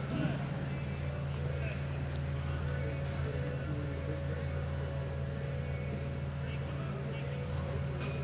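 Horse loping on soft arena dirt, its hoofbeats muffled, over a steady low hum and indistinct voices in the background.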